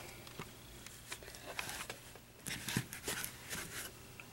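Faint, scattered clicks and taps of small plastic pieces being pressed onto a vinyl Dalek figure and handled, a few more of them in the second half.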